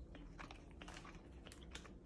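Faint chewing of dried tart cherries: soft, scattered mouth clicks.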